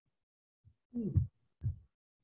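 Quiet call audio broken about a second in by two short low sounds: the first with a falling pitch, like a brief vocal sound, the second a soft thump.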